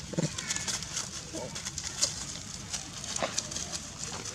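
Dry leaf litter crackling and rustling under a walking macaque, with a few short animal calls among the crackles.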